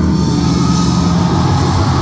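Live heavy metal band playing loud through an arena PA, with distorted guitars and bass sounding a steady low drone.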